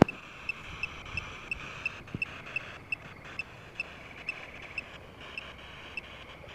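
Night insects chirping in an even rhythm, about three to four chirps a second, over a steady insect hum, with a few soft footsteps.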